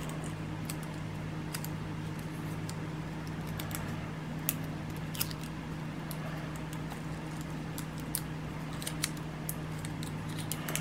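Scattered small clicks and taps of fingers handling and working a small plastic part, over a steady low hum.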